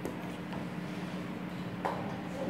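Steady low room hum, with a sharp click at the start and another near the end.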